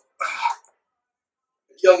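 A man's voice: a short wordless vocal sound about a quarter second in, a pause of over a second, then he starts to speak near the end.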